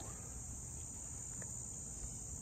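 Field insects chirring steadily in one unbroken high-pitched band, over a faint low outdoor rumble.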